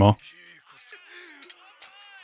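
Speech: a man's voice ends a word at the very start, then faint dialogue from the anime soundtrack is heard underneath.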